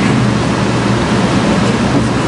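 Steady, loud hiss with a low hum underneath, even and unchanging throughout.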